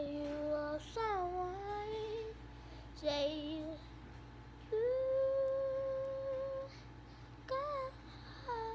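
A young girl singing a few wordless notes: a short held note, a falling glide, a brief note, then one long steady note of about two seconds, with a short note near the end.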